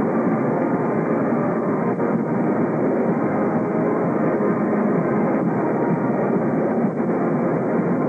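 Marching band (fanfarra) playing as it parades, heard as a loud, steady, muffled wash with the echo of an indoor gymnasium.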